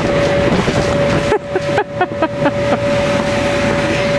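Electric blower of an inflatable bouncy castle running, a steady hum over rushing air, with a short laugh about two seconds in.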